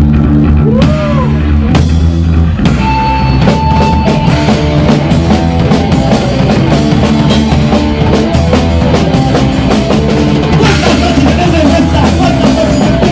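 Live Oi! punk band playing electric guitars, bass and drum kit, opening with held chords and cymbal crashes, then going into a driving full-band beat about four seconds in.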